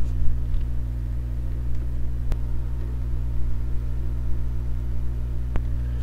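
Steady low electrical hum in the recording, with two sharp single clicks, about two seconds in and again about five and a half seconds in.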